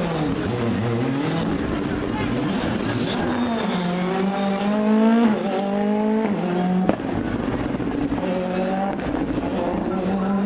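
Ford Fiesta rally car's engine. Its pitch falls as the car slows at the start, then climbs through the gears with a drop at each upshift. There is a sharp crack about seven seconds in, and the revs climb again near the end.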